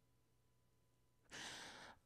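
Near silence, then about one and a half seconds in a short, faint breath from a woman close to the microphone.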